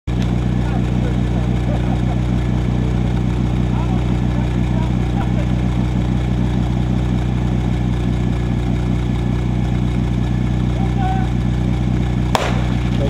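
A small portable fire pump engine running fast and steady, its firing pulses even and unchanging, warmed up and waiting at high revs before a fire-attack start.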